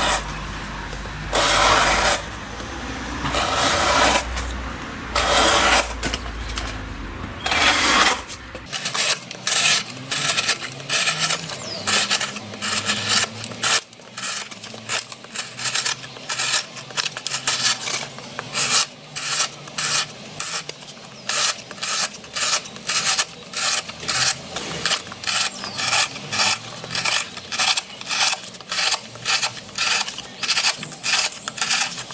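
Blade of a Cold Steel SR1 Lite folding knife (8Cr14MoV steel) slicing strips off thick, rigid corrugated cardboard in a cardboard edge-retention test. There are a few longer cuts over a low rumble at first, then from about eight seconds in short, rasping cuts at about two a second.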